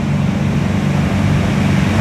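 A motor running with a steady, loud, low drone that holds an even level throughout.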